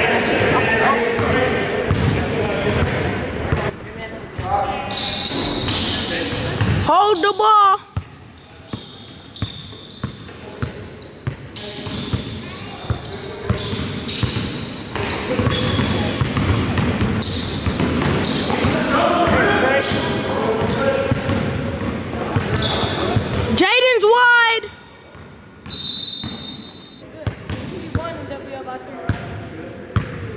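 A basketball dribbling and bouncing on a hardwood gym floor, with indistinct voices of players throughout and two short squeals, about seven and twenty-four seconds in.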